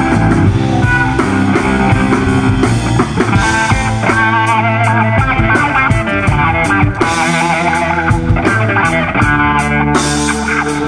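Live rock band playing: electric guitar and keyboard over bass and drums, with a steady beat of cymbal strokes starting about three and a half seconds in.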